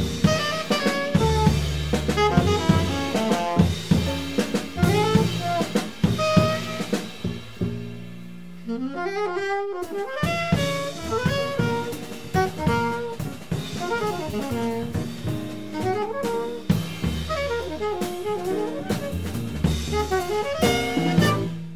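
Live jazz quartet: alto saxophone playing quick melodic lines over drum kit and double bass. About eight seconds in, the low end and the level drop briefly before the full band comes back in.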